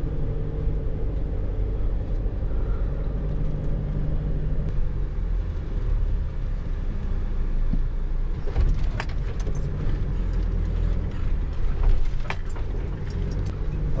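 A Mercedes van's engine heard from inside the cab as it drives slowly over beach sand: a steady low drone. A string of sharp clicks and knocks comes in from about eight seconds to near the end.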